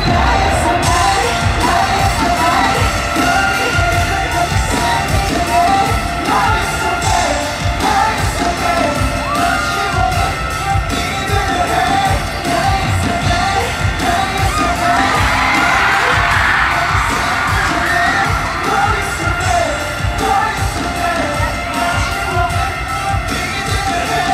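Live K-pop music played loud over a stadium sound system, a heavy pulsing beat with singing, and the crowd yelling and cheering along over it.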